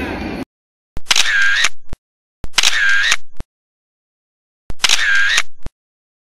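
Camera-shutter sound effect played three times, about a second each, with dead silence between. The copies are identical, as when a click is laid over photos appearing on screen. Just before the first, the live background noise cuts off abruptly.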